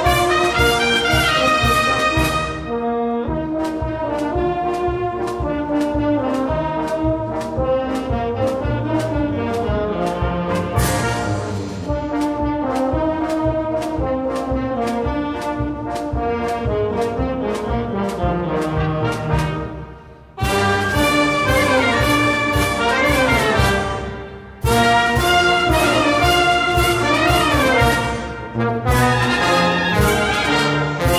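Maltese band playing a brilliant march: brass over a steady drum beat. A softer passage gives way, about two-thirds of the way through, to the full band playing loud after a brief break, with another short break a few seconds later.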